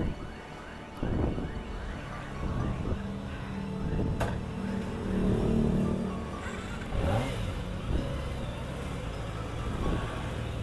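Kawasaki sport motorcycle's engine running, its revs rising and falling a few times.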